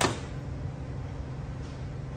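A single sharp clank of a tool set down on the workbench, with a brief ring, followed by a steady low hum of the shop.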